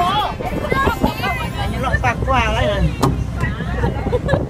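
Several people's voices calling out over a steady low rumble of wind buffeting the microphone, with a single sharp click about three seconds in.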